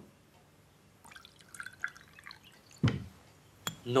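Water dripping and plinking in a glass bowl, followed by a heavy knock about three seconds in and a sharp click shortly after.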